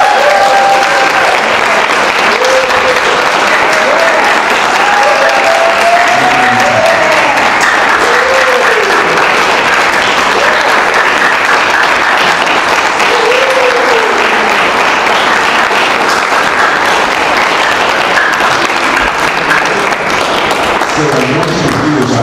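Sustained, loud applause from an audience clapping, with a few shouted cheers rising over it during the first two-thirds.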